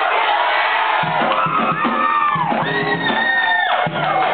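Club audience cheering and whooping, with two long high held tones, one after the other, the second higher than the first, sounding over the crowd.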